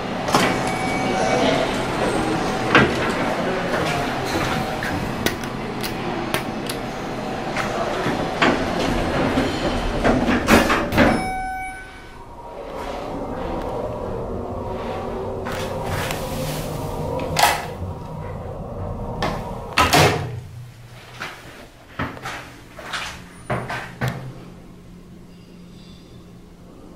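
A passenger elevator ride. Busy surrounding noise with voices fills the first part, then it drops to the quieter cab, where a steady low hum runs as the car travels. Several knocks and clunks of the sliding doors working come near the end.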